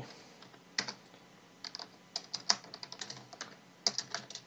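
Typing on a computer keyboard: a single keystroke about a second in, then a quick run of irregular key clicks, with a few more near the end.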